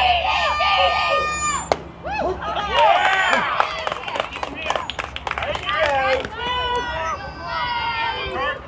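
Children's high-pitched shouting and cheering voices at a youth baseball game. A single sharp knock comes a little under two seconds in, and a flurry of sharp clicks runs through the middle.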